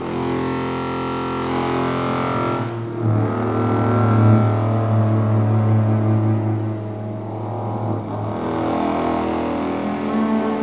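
Free improvised music by an acoustic ensemble: sustained, overlapping pitched tones, with a strong low held note from about three to eight seconds in.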